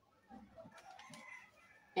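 A faint bird call in the background, lasting about a second, starting a little way in.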